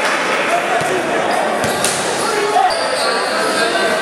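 Live basketball game in a large, echoing gym: a ball bouncing on the hardwood court a few times amid players' shouts and spectators' chatter.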